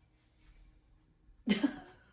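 Near silence, then a single sharp cough about one and a half seconds in.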